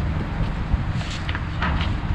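A steady low outdoor background rumble, with a few faint footsteps.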